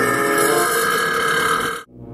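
A long, drawn-out burp sound effect, held steady and cutting off suddenly near the end.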